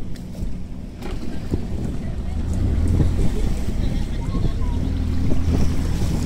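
Towing speedboat's outboard motor running under way, a steady low drone with wind buffeting the microphone and water rushing past; it gets louder about two seconds in.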